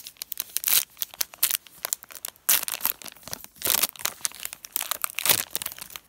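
Foil wrapper of a trading-card hanger pack crinkling and tearing as it is opened by hand: a dense, irregular run of sharp crackles and rips.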